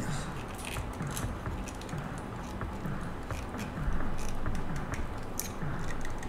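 Small screwdriver tightening machine screws into a metal model-car wheel rim: faint scraping and a few light clicks of the tool in the screw heads, with handling noise from the wheel.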